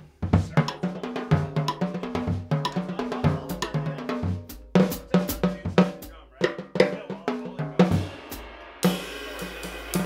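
Gretsch drum kit with calfskin batter heads played with sticks: quick strokes around the snare and toms with the bass drum under them, each stroke leaving a short pitched ring. A cymbal crash about nine seconds in keeps ringing under the last strokes.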